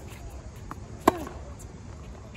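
Tennis rally on a hard court: a faint ball bounce about two-thirds of a second in, then one loud, sharp crack of a racket striking the ball about a second in, with a short falling vocal grunt right after it.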